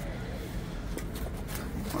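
Quiet outdoor background noise: a steady low rumble with a faint tick about a second in and another a little later.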